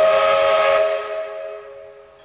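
Cartoon steam-whistle sound effect for steam blowing out of an angry face's ears: a hissing whistle on a few steady tones, loudest at the start and fading away over about two seconds.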